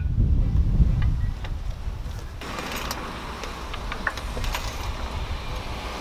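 Wind buffeting the microphone, heaviest in the first second or so, then a steady hiss with a few light clicks scattered through it.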